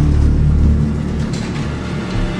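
A deep low rumble, loudest in the first second and then easing off, over faint background music.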